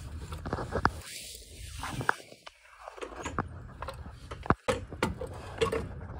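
Scattered scrapes and sharp clicks of a metal floor jack being slid and positioned under a car's frame on a garage floor.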